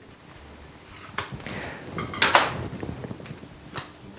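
Scissors snipping the corner off a plastic sachet of sucrose powder: a few short, sharp cuts and crinkles of the packet, the loudest about two seconds in.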